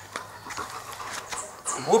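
A large dog panting softly, with a few faint clicks; a man's voice starts right at the end.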